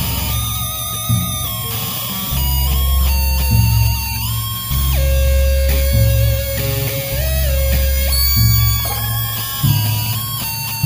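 Instrumental break of a lo-fi indie rock song: guitar over a bass line that changes note every couple of seconds, with a long held higher note in the middle.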